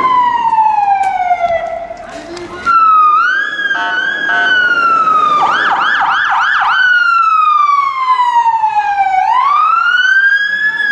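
Electronic siren of a police armoured vehicle wailing, its pitch sliding slowly down and up. About six seconds in it switches briefly to four fast yelps before going back to a long falling and rising wail.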